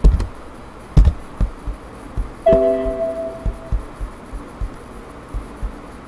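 Mouse clicks and key taps picked up by the microphone during computer work. About two and a half seconds in, a short computer alert chime rings for about a second.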